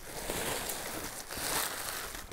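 Clear plastic wrapping crinkling and rustling steadily as a wrapped object is lifted out of a cardboard box.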